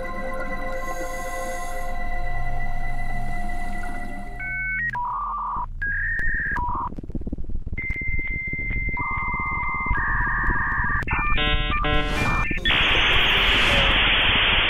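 Electronic soundtrack: a held chord of steady synthesizer tones over a low rumble, giving way about four seconds in to electronic beeps that jump between a few pitches, then a quick run of chirping tones and a loud burst of static hiss near the end.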